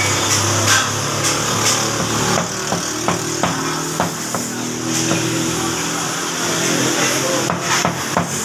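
A butcher's cleaver and knife knocking on a wooden chopping block as mutton is cut: irregular sharp knocks, mostly in the first five seconds and again near the end, over a steady background hum and hiss.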